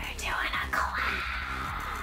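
Two women's voices, breathy and not forming clear words, over background music.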